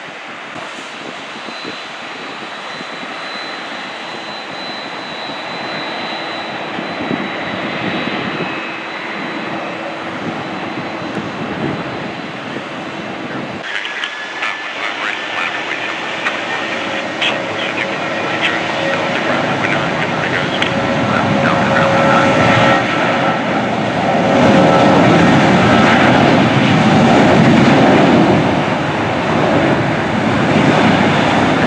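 Jet airliner engines: a Boeing 767-300 freighter taxiing with a steady whine at first. After a cut about halfway in, a Southwest Boeing 737's engines grow steadily louder as it taxis and rolls along the runway.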